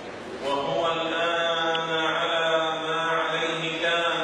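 A man's voice chanting in a melodic, drawn-out style through a microphone, one long phrase of held notes beginning about half a second in.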